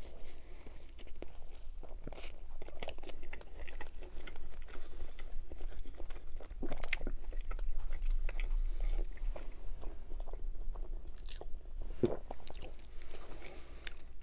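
Close-miked biting and chewing of a coney dog, a hot dog in a soft steamed bun with meat sauce and mustard, with scattered sharp mouth clicks through the chewing.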